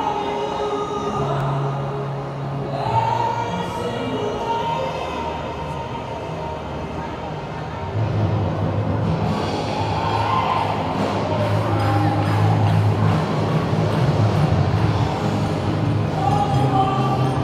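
Bon odori festival music from loudspeakers: a sung melody with long held notes over a steady bass line, louder from about halfway through, with crowd voices underneath.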